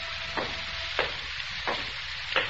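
Surface hiss and crackle of an old recording of a 1943 radio broadcast, in a pause between lines. A soft click repeats about every two-thirds of a second, typical of a scratch or flaw on the old disc.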